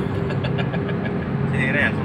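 Steady engine and road noise heard inside the cabin of a 2010 Honda Jazz on the move, its engine freshly carbon-cleaned. A short voice comes near the end.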